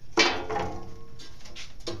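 Large round sheet-metal bandsaw wheel cover being lifted and handled: a loud metallic clank with a brief ringing tone that fades within a second, then another short knock near the end.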